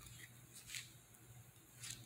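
Near silence with two faint, brief scrapes about a second apart: a fork stirring broccoli on a paper plate.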